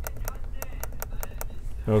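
HP Spectre x360 15 laptop trackpad pressed over and over, a run of sharp clicks about five a second. It clicks freely again now that the swollen lithium-ion battery that pushed up beneath it has been removed.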